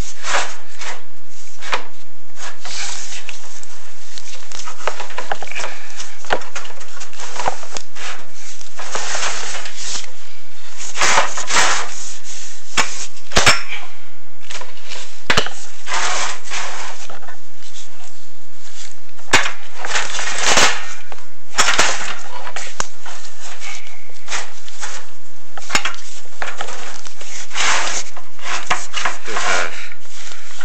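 Chimney inspection camera and its cable rubbing and scraping against the inside of a heavily sooted wood-stove flue pipe as it is fed down, in irregular rasping bursts with occasional sharp clicks.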